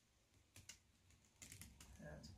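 Near silence with a few faint clicks and taps as a wet canvas on a wooden stretcher frame is handled and tilted.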